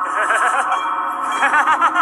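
Film-trailer soundtrack: a steady musical drone under a quick run of short, ringing notes that bend up and down in pitch, coming faster near the end.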